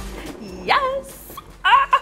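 Two short, high-pitched cries, each rising then falling in pitch, about a second apart.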